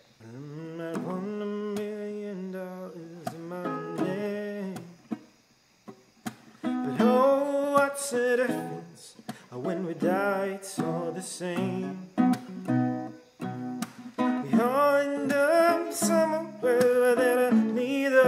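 A man singing while accompanying himself on an acoustic guitar. About five to six seconds in there is a short break, and after it the singing comes back louder and higher.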